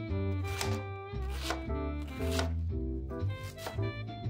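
Chef's knife shredding a head of cabbage on a plastic cutting board: several crisp chops, about one a second, heard over steady background music.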